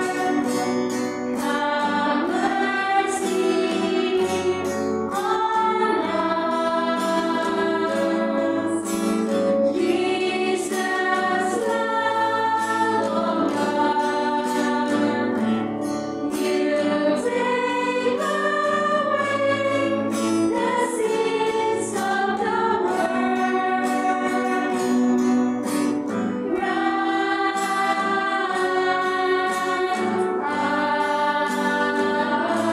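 Choir singing a hymn during Mass, in held notes that change pitch every second or two, with faint instrumental accompaniment.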